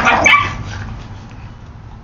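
A dog gives one short bark at the very start, a play bark from puppies rough-housing with their mother dog.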